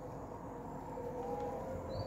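A motor vehicle's low rumble with a steady hum, growing louder. A brief high chirp comes near the end.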